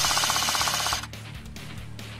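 An airsoft gun fires one full-auto burst of rapid, evenly spaced shots lasting about a second, over guitar music that plays throughout.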